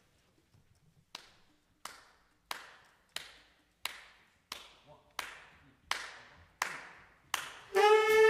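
A count-off of about ten sharp clicks, evenly spaced at roughly one and a half a second and getting louder, setting the tempo for a jazz big band. Near the end the band's brass section comes in together on a held chord.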